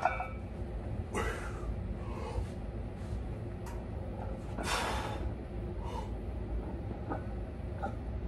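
A bench-presser's forceful breaths: two short breathy bursts, about a second in and about five seconds in, with a few faint clicks over a steady low hum.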